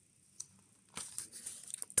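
Pages of a large hardcover cookbook being turned by hand: a papery rustle starting about halfway through.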